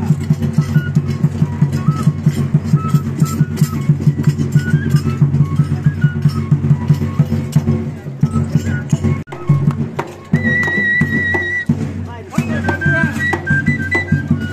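Andean festival dance music: a bass drum keeps a quick, even beat under a high flute melody. Around nine seconds the beat breaks off briefly, and a high warbling trill sounds for about a second after it.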